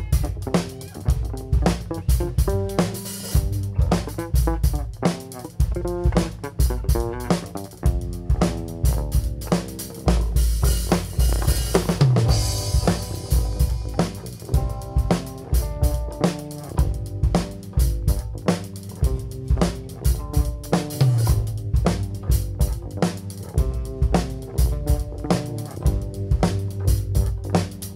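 A folk-rock band playing live through an instrumental passage: the drum kit keeps a steady beat on bass drum and snare under bass guitar and guitar. A wash of cymbals swells around the middle.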